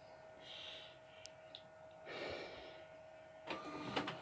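Faint steady hum from a large-format printer, with a small click a little over a second in and a soft rush of noise around two seconds in.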